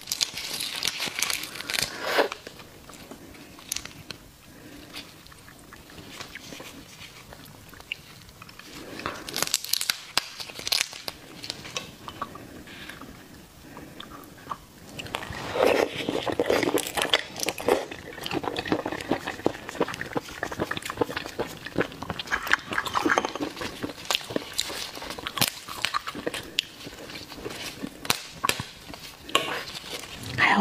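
Close-miked raw red prawn being pulled apart and peeled by hands in plastic gloves, the shell crackling and clicking. From about halfway through come wet biting and chewing of the raw prawn flesh in a dense run of small clicks and crackles.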